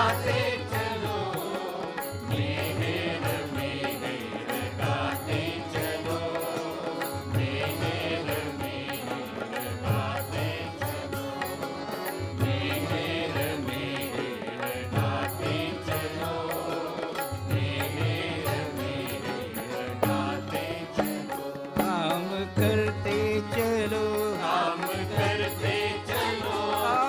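Group devotional chanting set to music, sung steadily all through, over a low repeating beat with regular light clicks.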